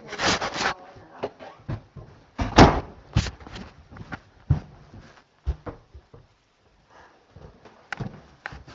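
Irregular knocks, bumps and rustles of a handheld camera being carried, with a louder bump about two and a half seconds in and quieter handling later.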